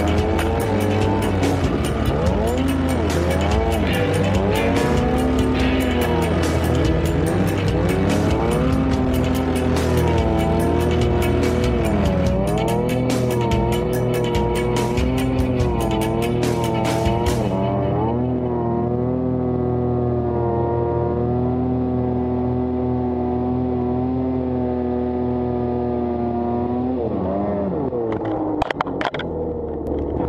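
Snowmobile engine revving up and down as it is ridden through deep powder, its pitch rising and falling with the throttle. A hissing rush over it stops a little past halfway, and the engine holds a steadier note for several seconds before changing again near the end.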